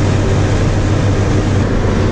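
Bread delivery truck driving at highway speed, heard from inside the cab: a steady low engine drone with road and wind noise.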